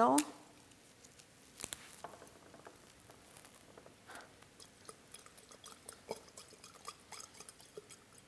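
Faint, scattered crackles and small clicks of fresh basil leaves being torn by hand and pushed down into a glass carafe, with a few slightly sharper ticks.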